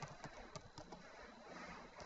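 Faint computer keyboard typing: a few soft key clicks, mostly in the first second, over quiet room noise.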